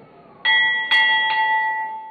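A hanging temple bell rung by hand: struck three times in quick succession starting about half a second in. Its clear tone rings on loudly between and after the strikes.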